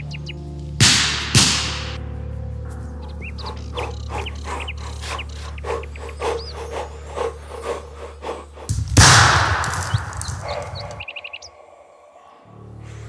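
Dramatic background music with a low drone. About a second in come two sharp cracks, and about nine seconds in a single loud pistol shot rings out with a long echoing tail.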